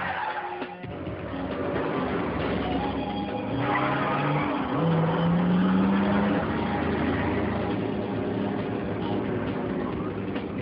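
Car engine running and revving as a car drives by, its pitch rising steadily about five seconds in, with tyre noise.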